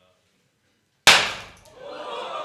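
A confetti cannon goes off about a second in with a single sharp, loud bang that dies away over half a second, followed by voices starting to cheer.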